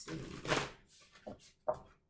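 A deck of oracle cards being riffle-shuffled by hand: a quick rush of flicking cards in the first second, then a few light taps as the cards are gathered.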